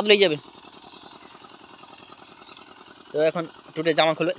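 A small engine running steadily in the background with a rapid, even putter, under a child's voice briefly at the start and again near the end.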